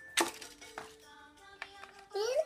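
A sharp crinkle about a fifth of a second in, then a few lighter clicks, as Kinder Surprise foil wrappers and plastic toy capsules are handled. Faint music with steady held notes plays behind.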